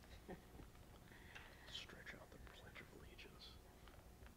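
Very faint, murmured talk among a few people, partly whispered, over a low steady room hum.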